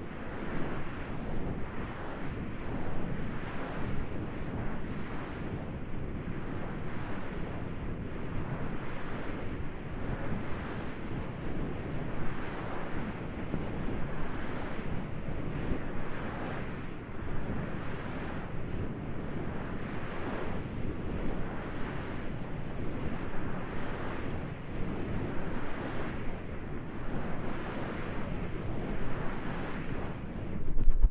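Hands rubbing and massaging the silicone ears of a 3Dio binaural microphone up close: a continuous rustling rub made of rhythmic strokes, about one and a half a second.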